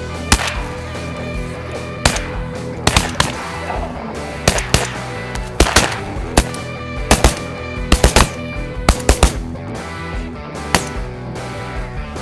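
Shotguns fired at ducks in rapid volleys: about twenty sharp blasts, often two or three in quick succession, over background music.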